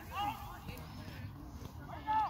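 Shouted calls from players across a football pitch, one loud call near the start and fainter voices after it, over a low outdoor rumble.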